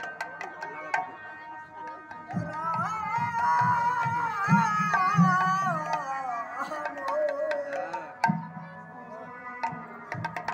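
Bengali devotional kirtan: a harmonium holds steady chords throughout while khol barrel drums beat low strokes. From about two seconds in to about eight seconds a voice sings a wavering melodic phrase over them; sharp clicks fall mostly in the first second.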